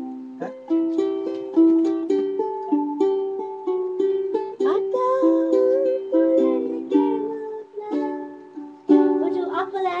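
Ukulele played in picked and strummed chords, each note struck sharply, then ringing and dying away, with a new chord every second or so.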